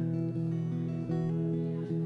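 Acoustic guitar strummed live, chords left to ring, with a light new strum about every three-quarters of a second.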